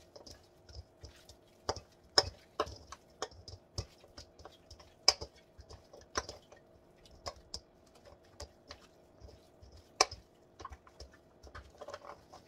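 Irregular clicks and taps of a hand tossing lamb shoulder chops in marinade inside a hammered metal mixing bowl, several a second, with a few louder knocks against the bowl.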